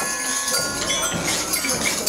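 Small bells jingling, with several other ringing tones sounding together.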